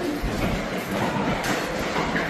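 Hurried footsteps on a hard hallway floor, an irregular clatter with low thumps, mixed with rumbling handling noise from a handheld phone being carried on the move.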